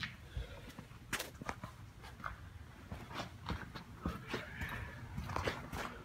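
Footsteps on a concrete floor: a scatter of light, irregular knocks and scuffs.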